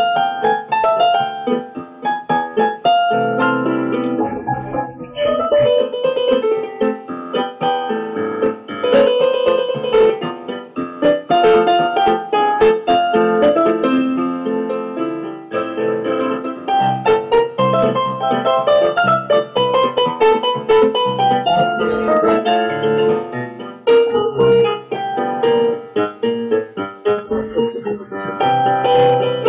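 Piano music: a melody of struck notes over held chords, playing on without a break.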